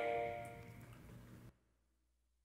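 Final piano chord from a digital stage piano ringing out and fading away, ending the song; the sound cuts off about one and a half seconds in.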